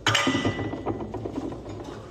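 Dishes clattering in a kitchen sink: one sharp knock right at the start with a brief ring, then a run of smaller knocks and clinks as a bowl is handled.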